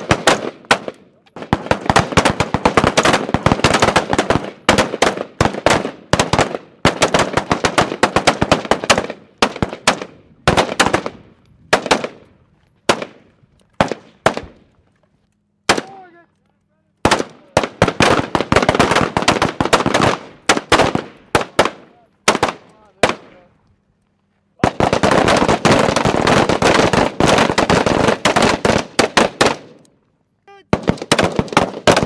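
Rapid gunfire from several M4-pattern carbines shooting at once: dense, overlapping shots in strings with short pauses. There is a brief lull near the middle and a silent gap of about a second a few seconds before the end, followed by a steady run of fire.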